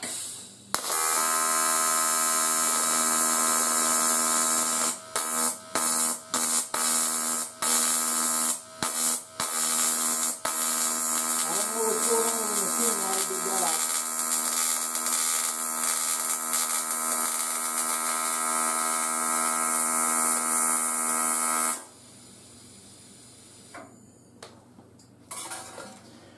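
AC TIG welding arc on aluminum, a steady buzz that runs for about twenty seconds and then stops. In the first half it cuts out and restrikes several times. The welder is unsure why and suspects the tungsten was too close to the work and arcing out.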